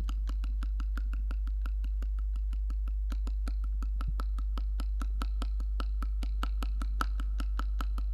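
Fast, regular ticking, about five clicks a second, over a steady low hum.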